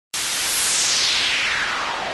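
Synthesized white-noise sweep that starts abruptly and falls steadily in pitch, a downward 'whoosh' effect opening an electronic music track.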